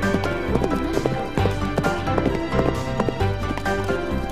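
Cartoon background music with a clip-clop rhythm of galloping horse hooves.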